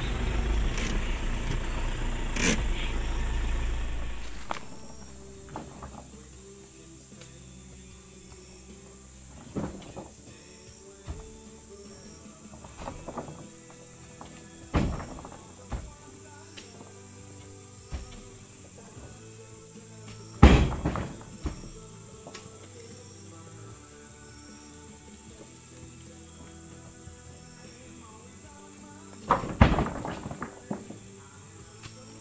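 Background music, broken by a few sharp, heavy thuds of oil palm fruit bunches being loaded into a pickup truck's bed; the loudest thud comes about two-thirds of the way through. A loud low rumble fills the first four seconds, then drops away.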